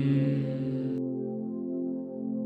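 Ambient drone music with steady, sustained tones. The held, reverberant tail of a chanted mantra syllable fades out about a second in, leaving the lower drone.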